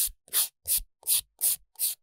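A 180-grit sponge sanding file rasping back and forth over a fingernail in short, even strokes, about three a second.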